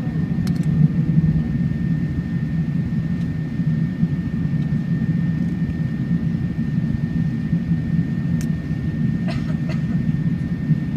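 Cabin noise of an Emirates Airbus A380-800 airliner climbing after takeoff: a steady low rumble from its four engines and the airflow, with a thin, steady high tone above it and a few faint clicks.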